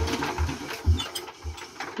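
Hand ratchet wrench clicking in short strokes, about two a second, as a bolt is turned on the vehicle's engine.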